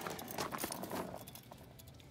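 Faint scattered ticks and rustles from a car tire being handled and turned over on gravel, dying away in the second half.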